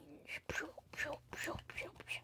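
Quiet whispered speech: a string of short, hushed syllables.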